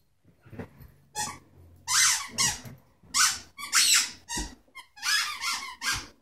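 A dog chewing a squeaky toy: a quick run of about ten short squeaks, roughly two a second.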